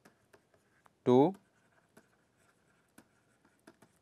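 Stylus writing on a tablet: faint, scattered light taps and scratches as words are handwritten, with one spoken word about a second in.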